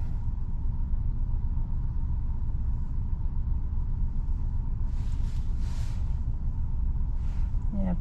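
Steady low rumble of a car's engine and body heard from inside the cabin as it sits in slow traffic, with a faint steady whine over it and a couple of brief hissy rustles past the middle.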